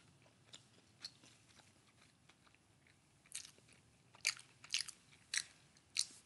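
Faint chewing and crunching of food close to the microphone, scattered at first, then a run of louder crunches from about three to five and a half seconds in.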